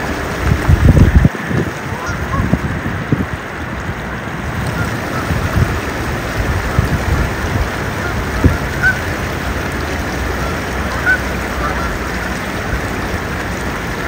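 Low, gusty rumble of wind on the microphone, strongest about a second in, with faint short waterfowl calls scattered throughout.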